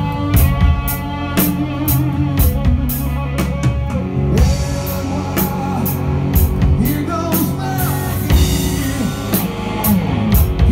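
A live rock band playing, with drum kit, electric bass, guitar and keyboard, the drums keeping a steady beat.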